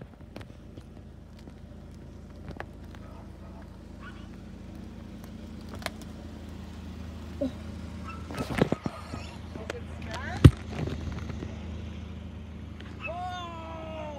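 A car engine idling steadily, with a few scattered sharp clicks and one loud sharp knock about ten seconds in. A high-pitched voice rises and falls near the end.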